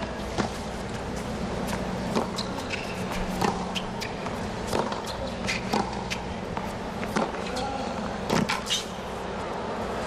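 Tennis rally: a ball struck back and forth by racquets and bouncing on a hard court, a string of sharp irregular pops over a steady stadium background hum.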